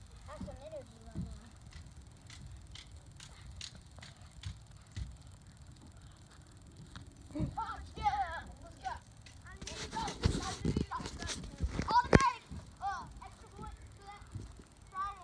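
Children's voices calling out across a field in short shouts about halfway through and again near the end, with light irregular ticks in the first few seconds and a brief burst of rushing noise on the microphone about two-thirds of the way in.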